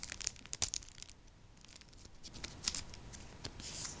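Packaging crinkling and crackling as it is handled and opened, a run of small dry clicks and rustles, busiest in the first second and again near the end.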